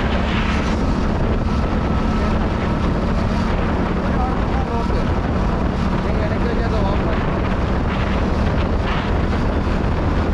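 Wind rushing over the microphone of a moving road vehicle, with a steady engine hum underneath at constant speed.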